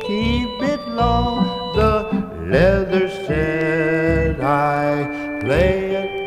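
Lounge organ music from a vintage LP: a wavering, sliding melody line over a bouncing bass line, with no words sung.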